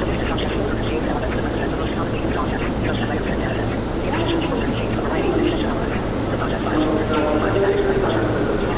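Subway platform ambience: indistinct voices over a steady low hum, continuous and even in level.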